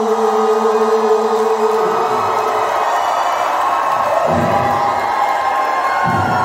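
A song ends on a held note about two seconds in, and a large crowd in a hall cheers and whoops in response.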